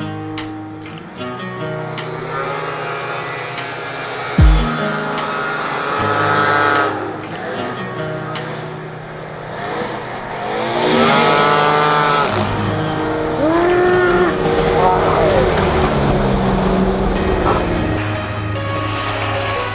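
Snowmobile engine revving and riding past, its pitch sweeping up and down several times in the second half, over background music. A single heavy thump comes about four and a half seconds in.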